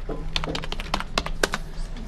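Computer keyboard being typed: a quick run of about eight keystrokes, typing a short package name, over a faint steady low hum.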